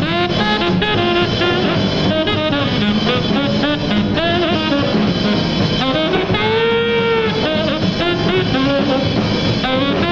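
Tenor saxophone playing a fast jazz solo in quick bending runs over upright bass and drums. About six and a half seconds in, one long held note bends up and back down.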